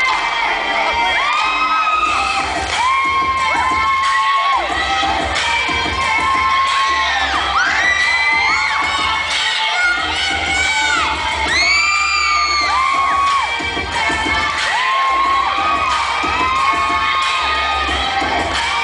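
A group of children shouting and cheering in short, arching calls, over recorded music with a low bass line.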